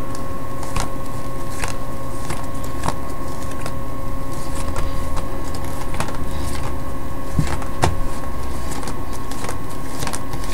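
Playing cards being dealt one at a time onto a perforated metal surface, a short soft click about every second, irregularly spaced. Under them runs a steady hum with a thin, faint whine.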